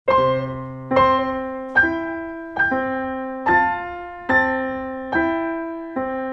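Piano playing a slow, evenly paced run of struck notes, a new one about every 0.85 seconds, each ringing and fading before the next: the programme's opening signature tune.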